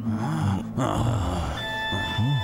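Background music with several short, low grunting animal vocalizations over it, and a brief noisy rustle near the start.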